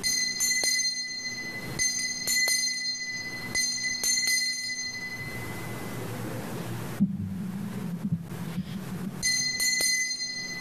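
Altar bells rung at the elevation of the consecrated host: several bright shakes in the first four seconds that ring on and fade, then another ring near the end as the host is reverenced.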